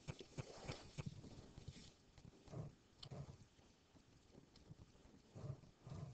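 Near silence: room tone with a few faint clicks and soft knocks, most of the clicks in the first second.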